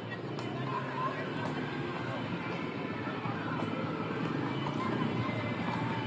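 Street crowd cheering and talking all at once, slowly growing louder, with faint music in the background.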